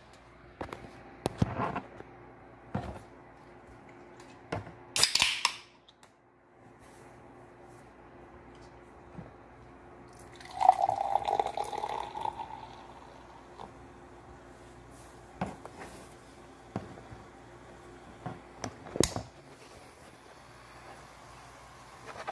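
A carbonated soda can cracked open with a short fizzing hiss about five seconds in, then soda poured into a glass for about two seconds, the loudest sound here. Scattered knocks and clicks of the can and glass being handled come between.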